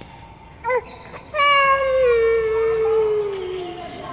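A small child's voice: a short high call about three-quarters of a second in, then a long drawn-out wail held for about two and a half seconds that slowly falls in pitch.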